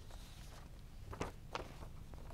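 Footsteps on a classroom floor, two sharp steps about a second in over a faint steady low hum of room noise.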